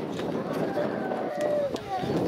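Several people talking at once: crowd chatter with overlapping voices and no single clear speaker.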